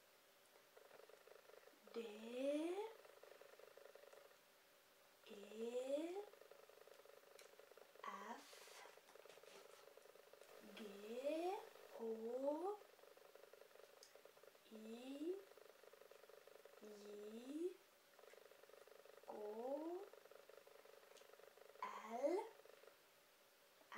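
A woman's soft voice saying single letters of the alphabet one at a time, each short and rising in pitch, about every two to three seconds, with pauses between them and a faint steady hum underneath.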